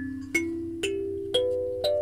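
Wooden kalimba (thumb piano) being plucked: a rising run of four notes about half a second apart, each ringing on under the next. Its tines are, the owner believes, out of tune.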